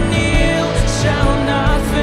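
Live worship band music: a woman singing lead into a microphone over acoustic guitar and the full band.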